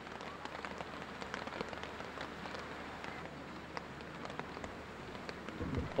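Steady rain falling on the open-air parade ground, a continuous hiss with many small drop ticks picked up by the podium microphone. A soft low bump near the end.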